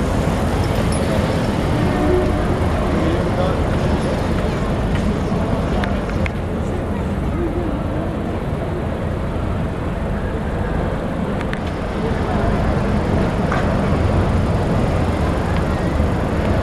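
City street ambience: a steady traffic rumble with indistinct voices of passers-by and a few scattered clicks.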